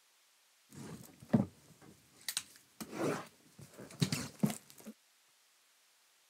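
A cardboard trading-card box being handled on a table: a run of knocks, taps and scraping or rustling for about four seconds, with the sharpest knock about a second and a half in, then it stops abruptly.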